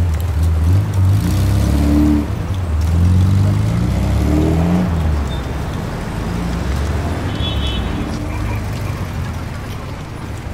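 Motor vehicle engine running low and uneven, its pitch rising and falling several times, louder in the first half and easing off toward the end.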